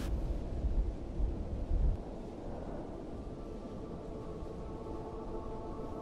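A low rumble that drops away after about two seconds, then a soft, steady chord of ambient background music coming in about three seconds in.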